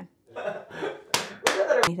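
Three sharp hand claps or slaps, about a third of a second apart, following a few soft vocal sounds.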